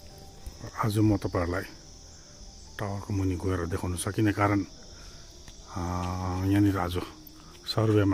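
A steady, high-pitched insect chorus runs throughout, with a man talking in short phrases over it.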